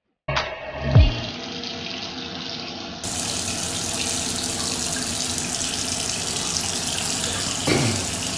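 A bathroom sink tap running steadily, water pouring into the basin. It is preceded by a short intro sound with a falling swoop, which gives way to the water about three seconds in.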